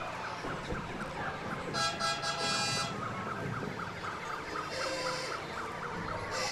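Electronic siren and alarm-style novelty sounds from the Shriners' small parade mini cars: a quick train of short repeating chirps, with a louder, brighter horn-like blare about two seconds in and a shorter one near five seconds.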